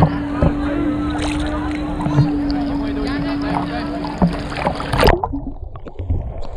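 Sea water sloshing and splashing around a snorkeler and a GoPro held at the surface, under a steady low hum that stops about four seconds in. About five seconds in, a splash as the camera plunges under the water, and the sound turns muffled.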